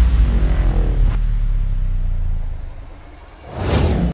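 Logo sound effect: a deep rumble with a whoosh that falls in pitch during the first second, fading away over about three seconds, then a short swell just before it cuts off.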